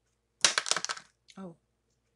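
A quick rattling clatter of small hard objects, about half a second long, as of something dropped onto a tabletop, followed by a short startled 'oh'.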